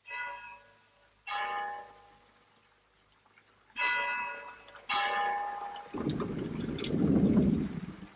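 Bell-like chimes: four ringing tones in two pairs, each fading quickly, likely a transition cue in the radio drama. Near the end they give way to about two seconds of a louder low rumbling noise.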